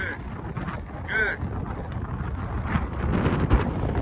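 Wind buffeting the microphone as a steady low rumble, with one short voice-like call about a second in.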